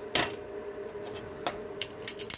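A few sharp clicks and knocks as a locking-pliers clamp and a melted PETG template are handled on a steel plate: one just after the start, one about one and a half seconds in, and a few near the end, over a steady background hum.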